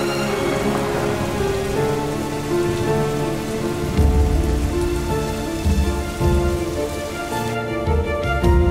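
Steady rain falling, under a film score of held, sustained notes. A few deep booms come in the second half.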